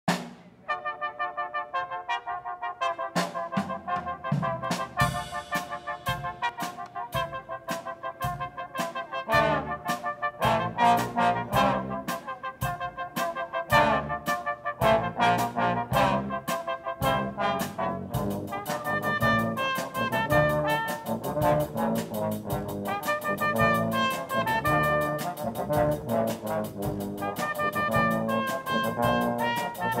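Small brass band playing a tune: trumpets, trombones and a tuba over a drum kit. The music starts just under a second in, and past the midpoint the drumming grows busier with steady cymbal strokes.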